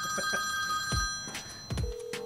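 Telephone ringing for about a second, followed near the end by a single steady beep tone as the call rings out. A few low thumps sound underneath.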